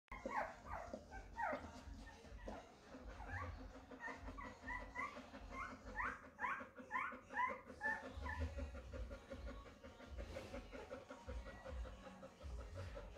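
Golden retriever whimpering in labour: a string of short high whines, some sliding down and some rising and falling, that thin out after about eight seconds.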